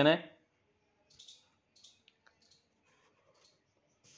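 A word of speech ends, then a few faint, scattered clicks and short soft rustles follow over the next few seconds.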